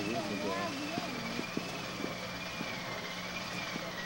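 Indistinct voices in a large room, clearest in the first second, over a steady low hum and a thin, wavering high whine that never stops; a few soft clicks.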